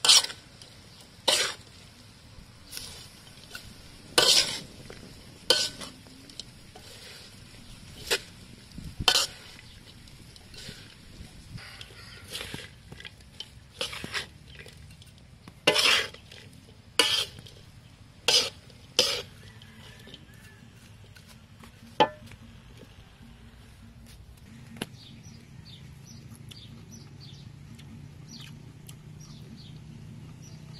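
A spatula scraping and knocking against a large metal wok in irregular strokes as a load of crickets and green onions is stir-fried. The strokes stop about twenty seconds in, and only a few faint clicks follow.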